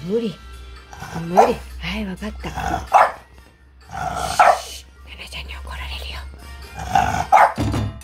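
A French bulldog whining in short rising-and-falling calls, then giving a few sharp barks.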